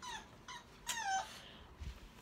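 Puppy whining: two short, high-pitched whines that fall in pitch, the second about a second in.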